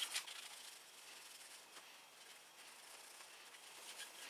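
Faint rubbing of a cloth on a chrome bicycle mudguard, wiping off dried metal polish: a few soft strokes at the start, then only a very quiet hiss.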